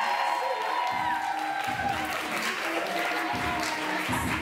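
Music with a steady bass beat that comes in about a second in, under a sustained melody.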